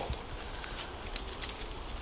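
Faint rustling and a few light clicks from gloved hands working an overhead tree branch.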